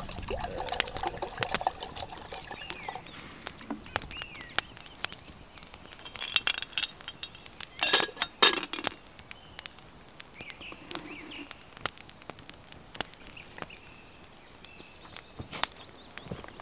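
Liquid poured from a leather bottle into a small cast-iron pot hanging over a wood fire. Around the middle come several sharp clinks of the pot's iron lid, the loudest sounds here. The fire crackles with scattered small snaps throughout.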